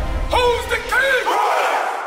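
A group of men shouting together in one loud rising cry, about half a second in, over music whose bass drops out partway through.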